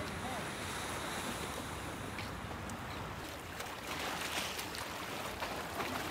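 Sea waves washing against a concrete breakwater, with wind noise on the microphone; it grows a little louder and more crackly in the second half.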